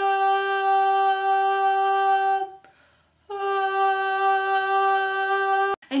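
A woman singing one long, steady held note on a single pitch. About two and a half seconds in she breaks off for under a second to sneak a breath, then takes up the same note again until just before the end.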